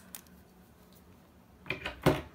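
Faint clicks of a ceramic jasperware box being handled, then near the end a short scratchy rub as scrubbing of its surface begins.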